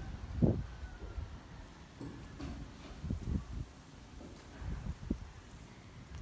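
Quiet outdoor ambience with a few soft, irregular low thuds from walking with a handheld phone, its microphone lightly buffeted by wind.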